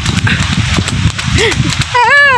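Strong wind buffeting the phone's microphone in a rain shower: a loud, irregular low rumble, with rain falling underneath.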